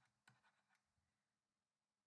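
Near silence, with a few very faint ticks of handwriting strokes in the first half second.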